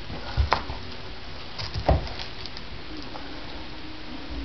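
Roll of vinyl wrap film being unrolled and pressed flat on a workbench: light crinkling and crackling of its protective backing, with a few short knocks of handling, the sharpest about half a second in and just before two seconds.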